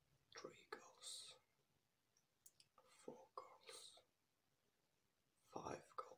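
A man whispering softly in short phrases separated by quiet gaps, counting goals one by one.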